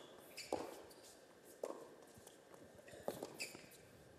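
Tennis ball being hit with rackets and bouncing on an indoor hard court during a rally: three sharp knocks a second or so apart, heard faintly over low crowd-hall ambience.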